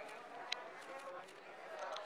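Indistinct background voices of people talking, with a sharp tap about a quarter of the way in and a few lighter clicks after it.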